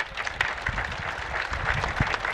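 An audience applauding: many hands clapping at a steady pace.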